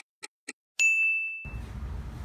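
Editing sound effect: three quick clock ticks, about four a second, then one high bell ding that rings on for most of a second. The low hum of a room follows.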